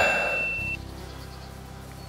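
A steady, high electronic beep that cuts off suddenly under a second in, followed by a faint, steady low hum.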